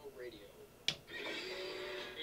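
A recorded voice playing back quietly, then a single sharp click about a second in as a hotkey is pressed on a Wheatstone VoxPro audio editing controller. The station's pre-recorded legal ID starts playing straight after.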